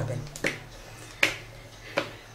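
Three sharp clicks, a little under a second apart.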